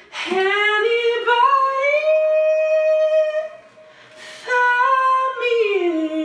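A man singing in a high voice: long, sliding held notes in two phrases, with a short pause and a breath between them about four seconds in.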